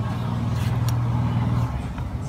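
Electric meat grinder motor running with a steady low hum that eases off near the end.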